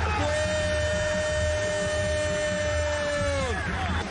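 A football commentator's long held shout: one drawn-out vowel on a steady high pitch for about three seconds, falling away near the end, over the steady rumble of a stadium crowd.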